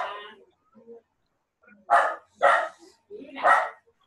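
A dog barking three times, two in quick succession and a third about a second later.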